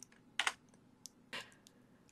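Quiet room tone with a few faint short clicks, one about half a second in and a softer one about a second and a half in.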